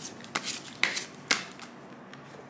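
A deck of tarot cards being shuffled by hand, with three sharp card slaps about half a second apart.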